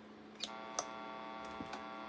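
A click, then a quiet, steady buzz from an electric guitar and amplifier rig, with a couple of faint ticks: the rig is live and idle just before the song starts.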